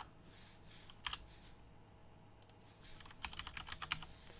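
Typing on a computer keyboard: a couple of keystrokes about a second in, then a quicker run of keystrokes in the last second and a half.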